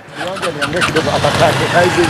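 Indistinct talking over a steady low background rumble.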